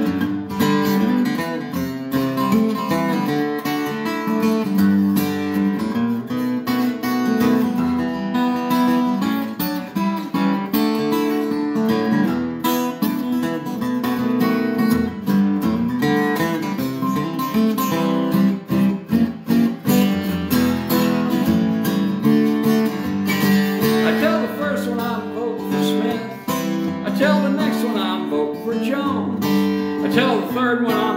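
Acoustic guitar played solo, strumming and picking chords in a steady rhythm: an instrumental break between verses of a country-folk song.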